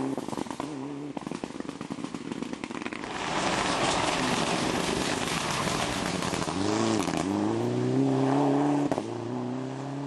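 Mitsubishi Lancer Evolution rally car's turbocharged four-cylinder engine at full effort on a stage, with crackling and popping in the first couple of seconds. About seven seconds in the engine note dips briefly, then climbs steadily as the car accelerates.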